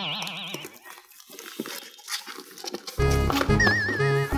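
Comic background music cue: a wavering, whinny-like tone at the start, a quieter stretch, then a bouncy tune with bass starting about three seconds in.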